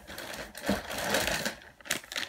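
Plastic food packaging crinkling and rustling as it is handled, a fast run of crackles that is loudest in the middle and dies down near the end.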